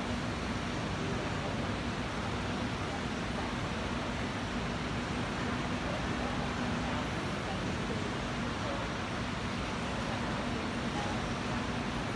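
Steady background noise of a busy billiards hall: an even hum with voices murmuring indistinctly.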